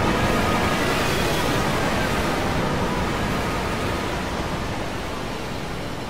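Dense, steady noise like TV static, with a few faint held tones in it, slowly fading.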